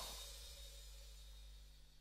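The end of a rock song: the band's final hit rings on and fades away to near silence, a few low notes and a high cymbal-like wash dying out over two seconds.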